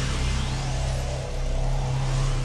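Sound effect of an animated logo sting: a steady, heavy low rumble under a hiss, with a thin whistle rising in pitch about half a second in.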